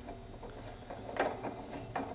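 Metal-on-metal handling noise as the stainless steel product cylinder of a Simplex AS-1 volumetric filler is worked by hand in its bracket: light clicks and a brief scrape about a second in.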